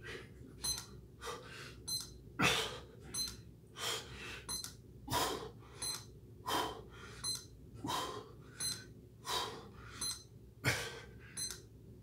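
A man's hard, rhythmic breaths during push-ups: a forceful puff about every second and a half, one for each repetition, about eight in all. Faint, short, high electronic beeps come in between the breaths.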